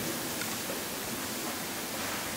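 Steady, even hiss of room tone and recording noise.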